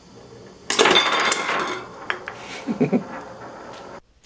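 A homemade Gauss rifle of steel balls and magnets on a ruler firing: a sudden loud crack about two-thirds of a second in as the released ball snaps onto the first magnet and the chain of collisions kicks balls down the line, then steel balls clattering and rolling, with scattered clicks dying away over the next two seconds.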